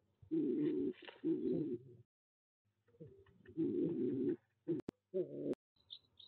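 Pigeon cooing close to the microphone inside a wooden nest box: several low coos in phrases of about a second, with short pauses between them. A few sharp clicks come near the end.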